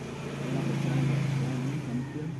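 An engine running nearby, a steady low hum that swells to its loudest about a second in and then eases off.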